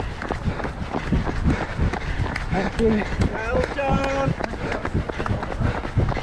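A runner's own footfalls on a tarmac path, heard close from the runner's camera as a steady rhythm of low thuds. About halfway through, a voice calls out briefly.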